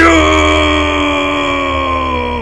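A voice holding one long, loud call on a single steady note, rich in overtones, as a drawn-out battle shout right after the order for the troops to advance.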